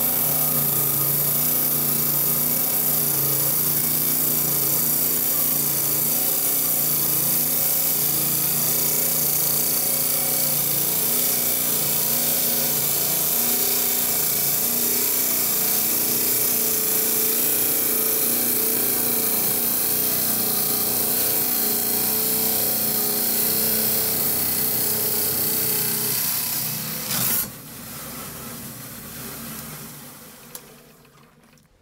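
Lortone TS-10 10-inch lapidary trim saw's diamond blade grinding steadily through a small piece of very hard aquamarine, a loud hiss over the motor's hum. Near the end there is a short click, and the saw then runs on much more quietly.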